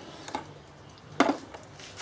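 Handling noise from electrical leads and plugs being worked at a wall socket: two faint taps, then a sharper knock just past halfway.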